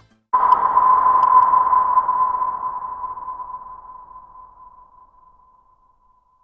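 Electronic sound effect: a single steady tone with a hiss under it. It starts suddenly just after the music stops and fades away over about five seconds, like a sonar ping.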